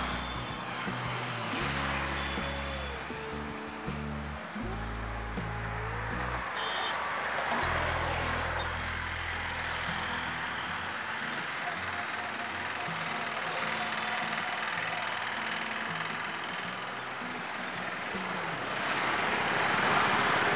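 Soft background music with low, held notes that change in steps and die away about halfway through, over a steady wash of background noise.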